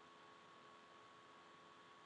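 Near silence: faint steady hiss and electrical hum from the recording.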